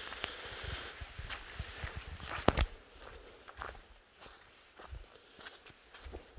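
Footsteps of a person walking on a dirt forest path covered in needles, irregular soft steps with one sharp snap about halfway through.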